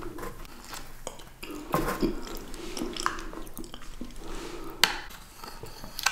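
Close-miked wet mouth sounds of eating soft creamy dessert, with metal spoons scraping and tapping against clear plastic dessert cups. Two sharp spoon clicks stand out, one about two seconds in and a louder one near the five-second mark.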